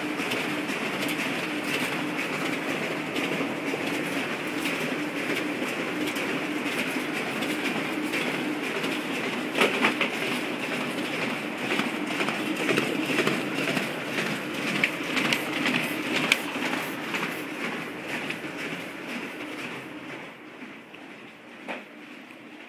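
High-volume office printer/copier running a print job, a steady mechanical whirr with rapid clicking as sheets feed through. It grows fainter over the last few seconds.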